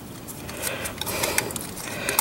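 Light metallic clicks and scraping as a steel mounting bracket is worked onto the end of an evaporative cooler motor, several irregular clicks in the second half.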